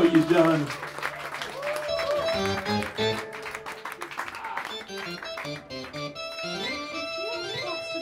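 A loud band chord dies away in the first second, then an amplified electric guitar plays loose single notes between songs, with voices underneath.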